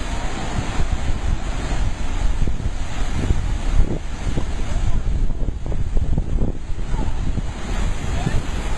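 Heavy ocean surf surging into a rocky sea pool and pouring over the rock ledges, a dense churning rush of water, with wind rumbling on the microphone.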